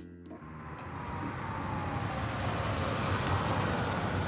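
Car sound effect: a car approaching and driving past, its noise swelling to a peak about three seconds in, with a whine that slides down in pitch.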